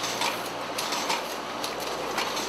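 Bonbon packaging machine in a chocolate factory running steadily: an even mechanical noise with repeated light clicks.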